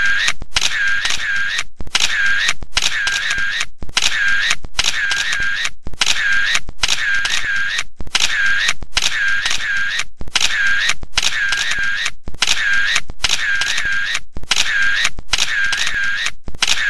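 A repeating sound effect in an exact, even rhythm: pairs of short bursts, about two a second, each pair followed by a brief break.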